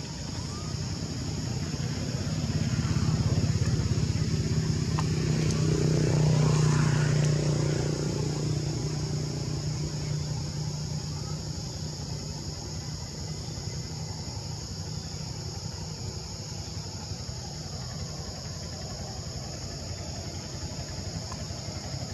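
A motor vehicle's engine passing by, growing louder to its peak about six seconds in and then fading away, over a steady high buzz of insects.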